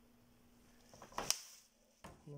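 Faint room tone with a steady low hum. A little over a second in there is a short, sharp knock with a couple of lighter clicks just before it, like something hard being handled.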